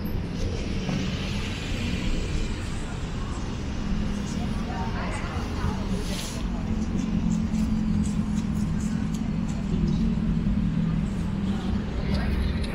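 City street ambience: a steady low hum of vehicle engines and road traffic, with voices of passers-by in the background.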